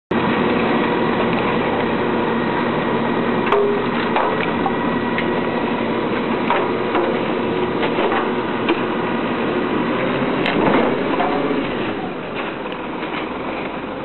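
Rotopress rotating-drum garbage truck running steadily, with sharp knocks and clanks every second or two.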